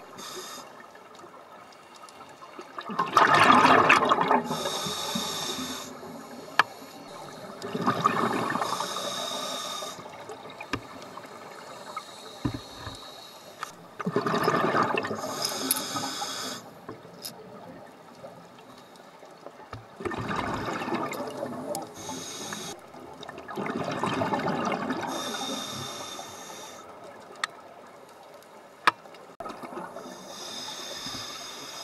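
Scuba diver breathing through a regulator underwater. Exhaled bubbles come out in loud rushes about every five to six seconds, each paired with the hiss of an inhalation through the regulator.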